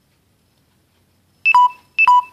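Dead silence, then about one and a half seconds in two short electronic beeps half a second apart, each a high tone falling to a lower one. It is a device alert that keeps recurring.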